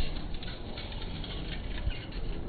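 BMX bike rolling over rough stone paving, its tyres and hub making a rapid, uneven crackle of small clicks over a low rumble.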